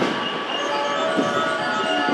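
A JR West 287 series electric train pulls away along the platform track with steady running noise. Several steady high tones sit over it.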